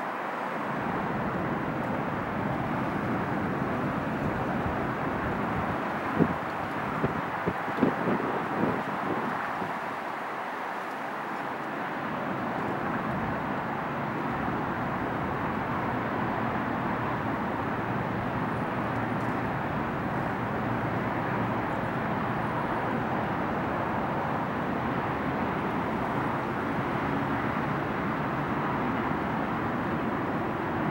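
Military helicopters flying past at a distance: a steady rumble of rotor and engine noise. A few short knocks come about six to nine seconds in.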